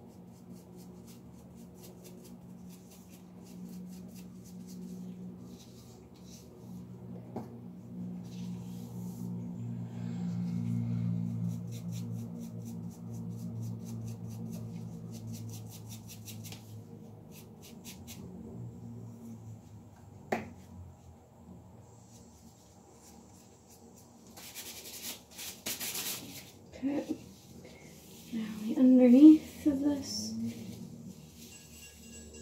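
Quiet rustling and small handling sounds of hair being sectioned and a bleach brush worked through it, over a low wavering hum. A louder burst of rustling comes near the end, followed by a few short vocal sounds.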